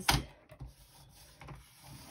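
Firbon paper trimmer's sliding cutter head drawn along its rail, cutting through a laminated pouch: a sharp click at the start, then a quiet scraping rub, with a few knocks near the end.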